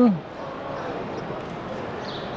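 A man's voice trails off right at the start, followed by the steady background noise of a busy exhibition hall: indistinct crowd chatter and room sound, with no distinct events.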